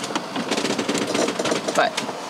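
Rapid, irregular crackling and creaking of a sailboat's cabin below deck as the hull pounds into a head-on swell.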